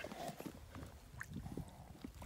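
Faint scattered small knocks and rustles as a large northern pike is hand-lined up through an ice-fishing hole.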